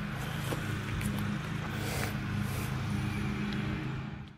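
An engine idling: a steady low hum that holds one even pitch throughout.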